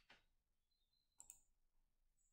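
Near silence: room tone, with two faint short clicks a little over a second in.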